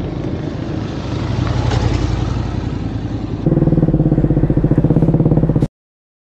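Motorcycles passing along a road with their engines running. About three and a half seconds in, the sound switches to a closer, louder motorcycle engine with a fast pulsing beat, which cuts off suddenly near the end.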